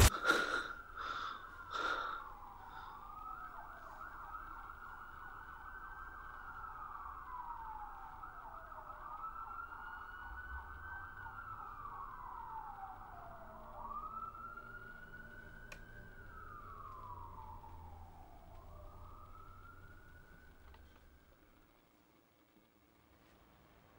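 A few loud thumps in the first two seconds, then a police siren wailing, its pitch slowly rising and falling about every five seconds, fading away near the end.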